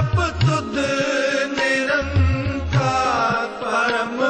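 Sikh devotional hymn (kirtan) sung to harmonium and tabla, with a steady drone of held notes under the voice and a regular low drum beat.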